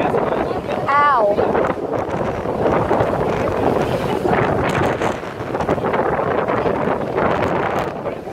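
Heavy sea surf churning and crashing into a rocky inlet, a loud continuous wash of water mixed with wind buffeting the microphone. About a second in, a short high call slides down in pitch.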